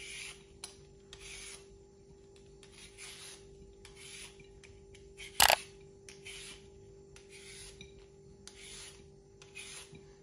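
Handheld vegetable peeler scraping down a raw carrot in repeated short rasping strokes, a little more than one a second. A single sharp click, the loudest sound, comes about five and a half seconds in, over a faint steady hum.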